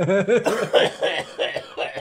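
A man coughing after a big vape hit, mixed with laughter.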